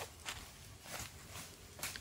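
Faint footsteps on dry leaf litter and cut brush, a few irregular steps.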